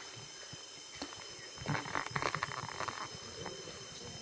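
Steady high-pitched insect drone, such as cicadas, with a brief burst of louder noise about two seconds in.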